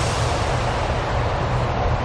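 Steady low outdoor rumble of background noise, with no distinct events.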